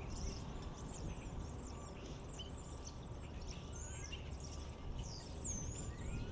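Small songbirds chirping with many short, high, thin calls that sweep up and down in pitch, a few lower sliding notes near the end, over a steady low background rumble.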